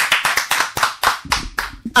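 Hand clapping: a quick run of claps, about eight to ten a second, that dies away about a second and a half in.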